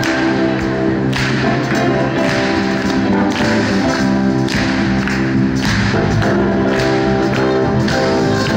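Live band music in a church: electric guitars and keyboard playing sustained chords over a steady beat, with people clapping along about once a second.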